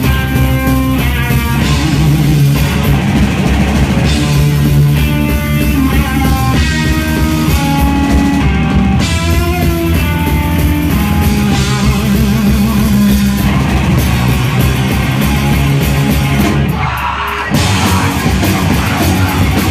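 Live rock band playing loud: electric bass, guitar and drum kit, with a short break near the end before the band comes back in.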